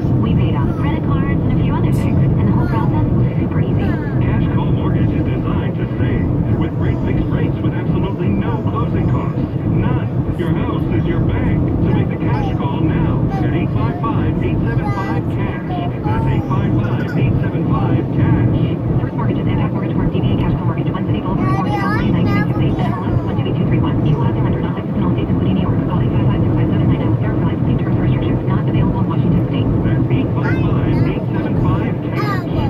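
Steady road and engine noise inside a moving car's cabin, with faint, indistinct talk over it.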